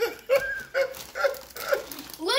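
High-pitched laughter: a run of short pulses, about three a second.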